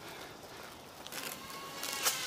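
Garden hose spray nozzle turning on about a second in: a hiss of spraying water with a faint whistle, growing louder toward the end.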